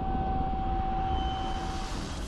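A steady, low rumbling drone with a held hum over it, like an aircraft engine heard from afar, thinning out near the end.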